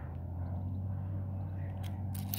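Quiet open-field ambience with a steady low drone throughout and no chainsaw running.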